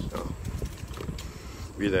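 Low, steady rumble of wind and riding noise on a phone microphone during a bicycle ride, with a man's voice starting again near the end.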